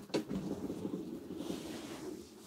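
Rear lift bed of a camper van being raised: a click as it starts moving, then a low rumbling rattle from the bed and its mechanism as it travels upward for about two seconds.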